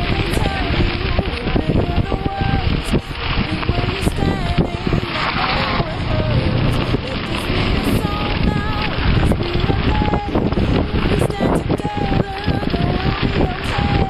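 Wind rushing over the microphone of a camera on a moving mountain bike, with the bike rattling and knocking over a rough gravel road. Brief high, wavering tones come and go through it.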